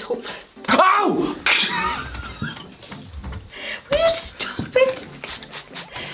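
A man's wordless cries of pain, several short yelps and groans that rise and fall in pitch. They are loudest about a second in and again around four seconds, as a sharp haircutting scissors jab to the head hurts him.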